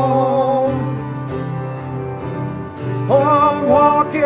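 Live acoustic band playing a slow song: acoustic guitars and a grand piano, with a man's voice holding the last note of a sung line. A short instrumental stretch follows, and the singing comes back in about three seconds in.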